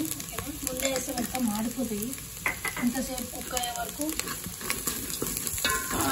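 Sliced onions, green chillies and whole spices sizzling in hot oil in a metal pot, stirred with a steel ladle that scrapes and clicks against the pot.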